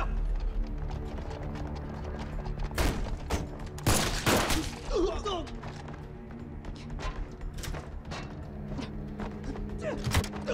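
Pistol shots and heavy impacts over tense dramatic film music: a few sharp cracks about three seconds in, the loudest and longest crash around four seconds in, then lighter knocks.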